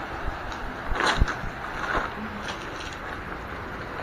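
Footsteps on loose beach cobbles, stones knocking together a few times, the sharpest about a second in, over a steady wash of noise.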